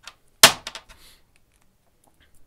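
One sharp clack about half a second in, then three or four quick fainter clicks dying away, as a small metal pocket flashlight is handled against a metal tabletop.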